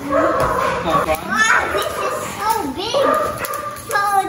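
A pet dog barking and whining repeatedly, mixed with children's voices.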